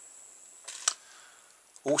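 Two light clicks close together, the second louder, as a bent wire paper clip and a small plastic battery pet nail grinder are handled; the grinder's motor is not running.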